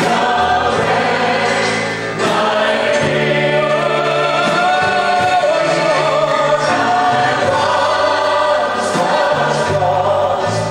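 Live gospel worship music: a band with drums and electric guitar playing under sustained singing voices, with a brief lull between phrases about two seconds in.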